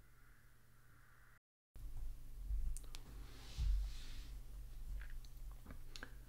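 A few sparse computer mouse clicks over a low, steady hum of room and microphone noise, with a soft rustle about halfway through. There is a brief cut to total silence early on.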